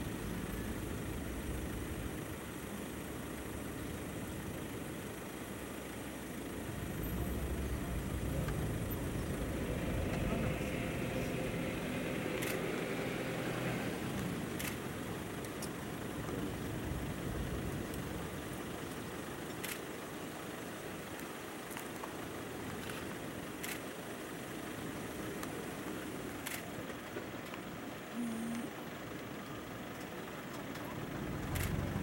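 A vehicle's engine running at idle, with faint low voices and a few sharp clicks scattered through the second half.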